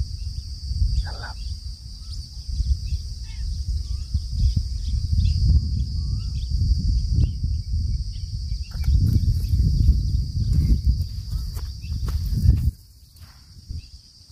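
Low, gusty rumble of wind on the microphone that cuts off suddenly near the end, over a steady high-pitched drone of insects and scattered short bird chirps.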